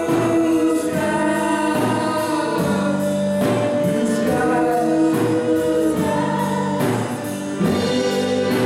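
Live gospel band playing: several female voices singing together over keyboard, guitars and drums, with a steady beat.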